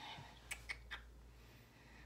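Three faint, short clicks about a fifth of a second apart, then quiet room tone.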